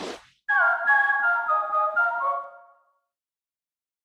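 A short whoosh, then the E.ON sound logo: a brief musical jingle of a few chord notes stepping downward, fading out about three seconds in.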